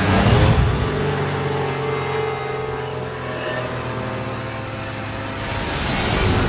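Film soundtrack played backwards: a steady aircraft engine drone mixed with score music and the rumble of collapsing buildings. It swells just after the start and again near the end.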